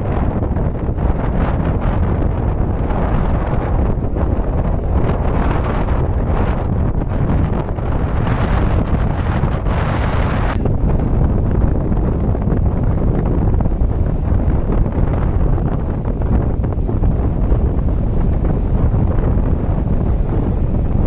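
Strong sea wind buffeting the microphone in a steady low rumble, with the wash of breaking surf swelling underneath a few times.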